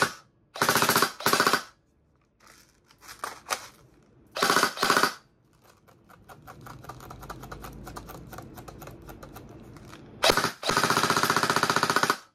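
G&G ARP 556 2.0 airsoft electric gun (AEG) firing full-auto bursts, its gearbox cycling very fast. There are short bursts early and about four and a half seconds in, a quieter run of rapid ticking in the middle, and a longer loud burst near the end.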